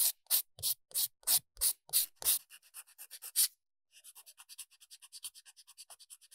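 Nail file sanding the surface of a fingernail in even back-and-forth strokes, about three a second, to smooth a rough surface. After a short pause near the middle, a sponge buffer takes over with faster, quieter strokes.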